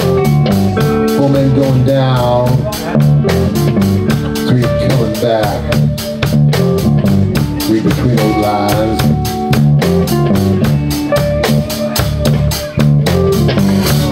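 Live blues band playing: electric guitars and bass over a steady drum-kit groove, with guitar notes bending up and down every few seconds.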